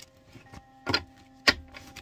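Tarot cards being handled over a table: two sharp card slaps about half a second apart, over a faint steady hum.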